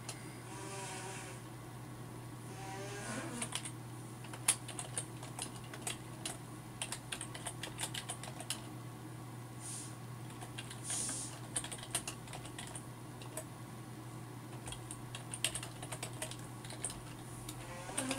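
Computer keyboard being typed on, irregular keystroke clicks over a steady low hum.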